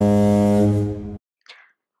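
A low, steady horn blast lasting about a second that cuts off suddenly: a horn sound effect for the story's line 'Honk went the horn.'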